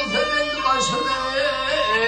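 A man singing a Turkmen folk song in wavering, drawn-out notes, accompanied by a plucked dutar.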